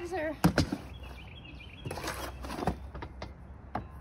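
Hand scooping and stirring a gritty compost, perlite and peat moss potting mix in a plastic wheelbarrow tub: soft rustling and scraping, with a couple of sharp knocks about half a second in and another click near the end.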